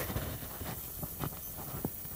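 Low-level room noise with a few faint, light clicks about a second in and near the end.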